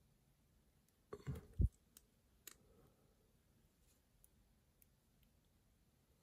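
A few faint clicks, with a soft knock about a second and a half in and one more click shortly after, as gloved fingers turn the crown of a Casio MRG-G1000 watch to set its timer.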